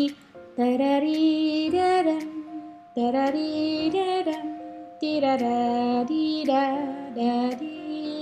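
Piano playing the opening melody of a gentle G-major piece in 3/4 time, in three short phrases, with a woman's voice singing the tune along with it.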